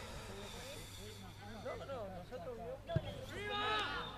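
Voices of players and people at the pitch side calling out, at a distance, during a rugby match, with a sharp knock about three seconds in. A louder shout follows just after the knock.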